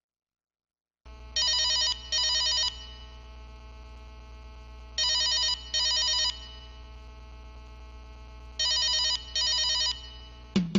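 Telephone ringing in a double-ring pattern: three pairs of short warbling trills, about three and a half seconds apart, starting about a second in. A steady low electrical hum runs beneath the rings.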